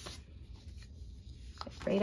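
Faint rustling of paper pages in a ring binder being handled, with a light tick shortly before a woman starts speaking near the end.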